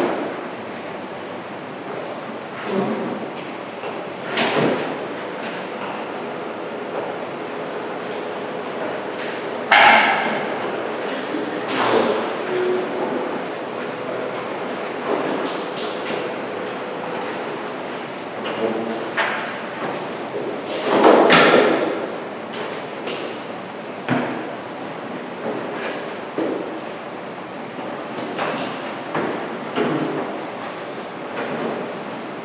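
Steady room hiss broken by scattered knocks and rustles of paper documents and a cardboard box being handled on tables, the loudest about ten seconds in and a longer rustle around twenty-one seconds.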